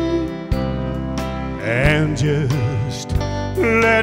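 Live country band playing, with pedal steel guitar sliding between notes over a steady drum beat.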